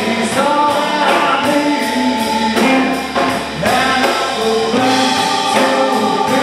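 Live blues band: a man singing over electric guitar, with drums keeping a steady beat on the cymbals.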